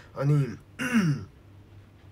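A man clearing his throat: a short voiced sound, then a rougher one with a falling pitch about a second in.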